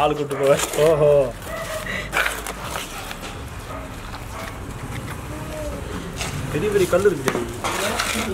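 A trowel scraping and squelching through wet red clay mud in a basin, with sharp scrapes of the blade against the bowl. A man's voice is heard for about the first second and again briefly near the end.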